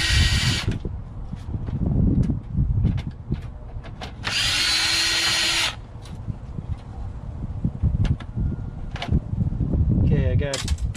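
DeWalt cordless power driver with a Torx bit, spinning in two short bursts to back screws out of a burned computer case. The first burst stops less than a second in and the second starts about four seconds in and lasts just over a second. Clicks and knocks from handling the metal case come in between.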